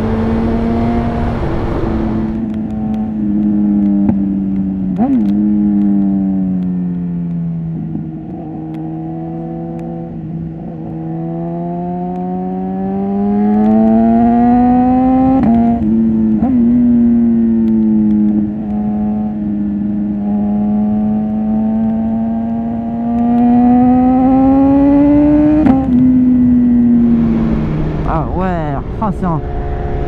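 BMW S1000RR inline-four engine pulling on the road, its pitch rising and falling with the throttle and sagging low for a few seconds in the first half as the rider rolls off. Twice, about halfway and near the end, the note drops abruptly at a sharp click as it shifts up a gear. Wind noise on the microphone is heard at the start and again near the end.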